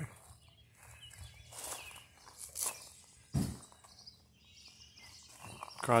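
A few scattered footsteps on gravel, quiet, with a soft thump a little past the middle.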